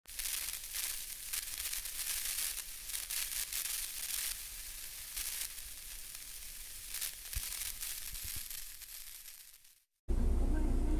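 A steady hissing crackle with scattered clicks, no tune or voice in it, fading out just before the end.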